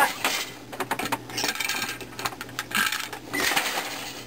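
Wooden jack loom being worked: a boat shuttle passed through the shed, then the beater and treadles knocking. The result is an irregular run of wooden clicks and clacks.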